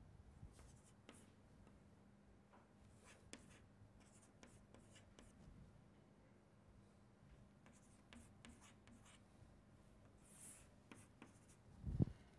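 Chalk writing on a chalkboard: faint, scattered taps and short scratching strokes of the chalk, with a sharper tap at the very end, over a faint steady hum.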